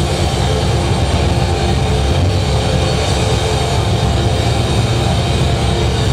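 Live heavy metal band playing loud, distorted electric guitars and bass in a dense, unbroken wall of sound, overloading the recording.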